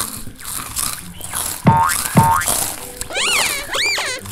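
Cartoon sound effects: two quick boings with falling pitch a little under two seconds in, then two tones that rise and fall in pitch near the end.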